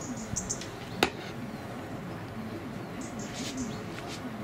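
Small birds chirping outdoors in short high bursts, twice, with a single sharp click about a second in over a steady low background.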